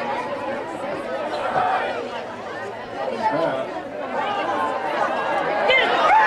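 Crowd of spectators chattering: many voices talking over one another, none clearly picked out.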